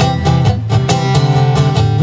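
Guitar strummed in a steady rhythm, about four strokes a second, chords ringing between the strokes.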